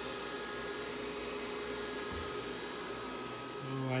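Cooling fans of a DragonMint T1 Bitcoin ASIC miner running at about 44 percent speed inside a soundproofed enclosure: a steady whooshing hum with a few faint steady tones in it, at about 50 decibels in the room.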